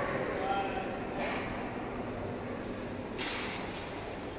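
Sandwich panel forming line running at its saw cutting station: a steady mechanical hum, with two brief rushes of noise about a second in and again past three seconds.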